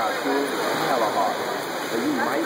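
Swimmers splashing through the water in an indoor pool, a steady wash of noise, with spectators' voices and shouts over it.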